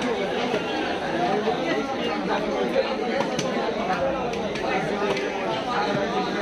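Busy market chatter, many voices talking over one another, with a few sharp knocks of a cleaver striking fish on a wooden chopping block.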